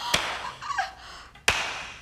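Two sharp knocks about a second and a half apart, each dying away quickly, with a faint voice between them.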